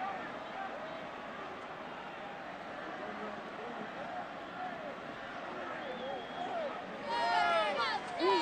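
Stadium crowd murmur with scattered distant voices. About seven seconds in, cheerleaders start shouting loud chants, some through megaphones.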